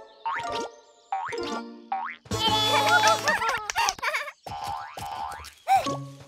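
Cartoon sound effects: several short springy boings that slide upward in pitch, over light children's music. About halfway through comes a burst of wobbly, wordless character vocalizing.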